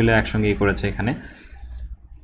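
A man speaks briefly, then a few light clicks from a computer mouse follow as the page is scrolled.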